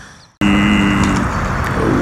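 The sound drops out briefly at an edit, then outdoor road-traffic noise comes in suddenly, loud and steady, with a steady tone that lasts nearly a second. A man's voice starts just before the end.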